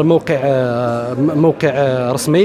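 Only speech: a man talking, drawing out one sound for about a second.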